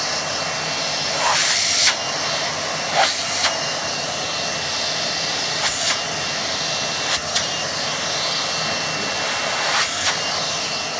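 Vacuum cleaner running steadily with a thin high whine, its nozzle held on a speaker cone's dust cap to suck the pushed-in cap back out. The suction sound surges briefly several times.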